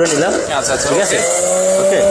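Electric centrifugal juicer's motor switched on and spinning up, its whine rising in pitch about a second in and then holding steady at full speed.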